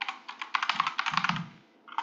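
Computer keyboard typing: a quick, dense run of key clicks that stops about a second and a half in.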